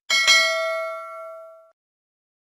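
A bright bell-chime sound effect for a notification-bell click. It is struck once, with a second sharp hit a moment later, and rings out in a clear tone that fades away over about a second and a half.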